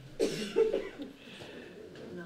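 A person coughing twice, about half a second apart, the first cough the louder.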